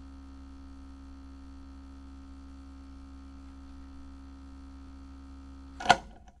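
Steady electric hum with several held tones under it, a logo-intro sound effect. Near the end comes a short, sharp hit, much louder than the hum.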